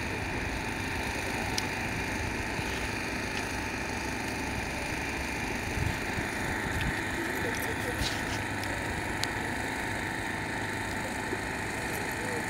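Steady outdoor background noise with faint, indistinct voices and small cars driven slowly at a distance.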